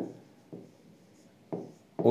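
Pen writing on the glass of an interactive display panel: a few soft taps and scratches as a word is written, the strongest at the start and another about a second and a half in.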